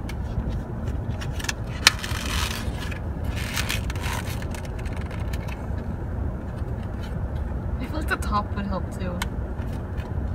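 Steady low rumble of a car's interior, with clicks and scraping from plastic earphone packaging being handled; a sharp click comes about two seconds in.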